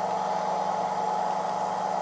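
Steady hum and whir from a Turnigy Mega 400W balance charger running a balanced charge of a 3S lithium-ion pack at about 3.3 A, with two even tones under a fan-like hiss.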